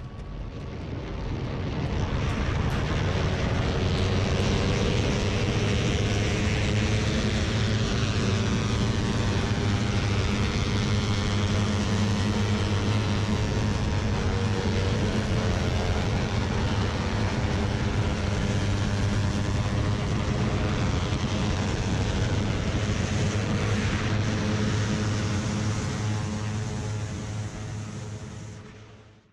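Small-displacement motorcycle engines running hard at high, steady revs, heard from a bike riding at speed in a group. The sound builds over the first couple of seconds, then holds with only slight rises and falls in pitch.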